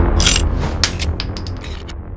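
End-card sound effect: a run of bright metallic clicks, like dropping coins, over a low bass that fades out.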